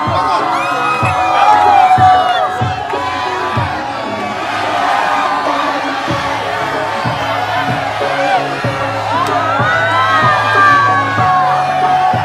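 Loud dance music with a steady bass beat playing from a parade float's sound system, with people whooping and cheering over it.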